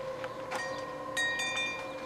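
Light chiming: a sharp tick about half a second in, then several clear high ringing tones start together just over a second in and hold, over a steady low hum.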